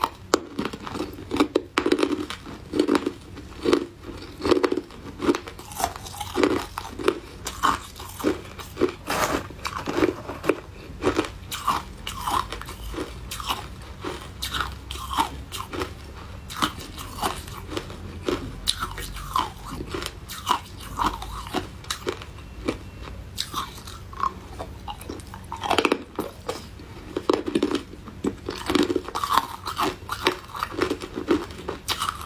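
Close-miked crunching and chewing of hard ice chunks: a person biting off pieces and grinding them between the teeth, several crunches a second, heaviest near the start and again near the end.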